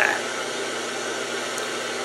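Ghost box radio scanning stations in a reverse sweep, giving out a steady hiss of white static.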